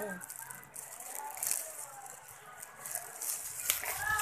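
Clear plastic glove crinkling and rustling as a hand moves inside it, quiet crackles under a low hum.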